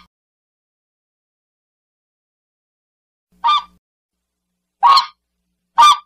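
Silence, then, starting about three and a half seconds in, three short waterfowl calls about a second apart: cartoon sound effects for swans on a pond.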